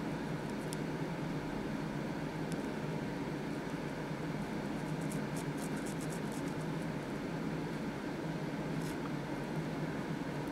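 Steady low room hum with a run of faint, light clicks about five to seven seconds in and one more near the end.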